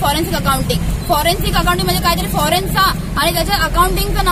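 A young woman speaking rapidly and emphatically, over a steady low background hum.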